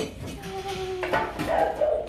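Dog whining: several long, drawn-out, steady whines one after another.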